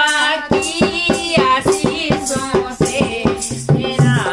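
Women singing a sohar folk song together, accompanied by a dholak and a small hand-shaken bell rattle keeping a quick steady beat of about four strokes a second. Deep dholak strokes grow prominent near the end.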